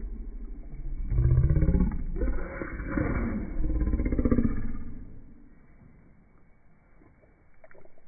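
A person's voice making loud wordless drawn-out sounds that swoop up and down in pitch, from about a second in until about five seconds in, over a low rumble.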